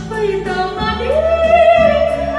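A woman singing live into a microphone over a backing accompaniment, her voice climbing about halfway through to a long held high note.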